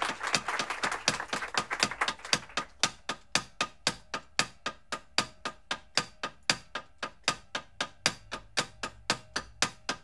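A steady, even rhythm of short, dry percussive clicks, about five a second, opening the song as applause dies away in the first second or two.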